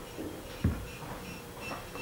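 Quiet room tone with a faint steady hum and one short, soft tap about two-thirds of a second in.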